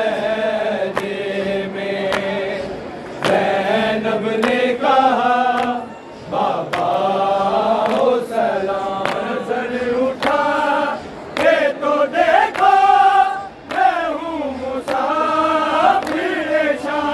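A group of men chanting a noha, a Shia lament, in unison without instruments, with sharp hand slaps sounding at uneven intervals through the singing.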